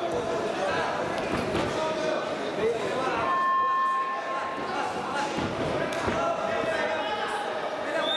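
Voices calling out across a large, echoing sports hall, with several dull thuds of wrestlers' bodies hitting the wrestling mat.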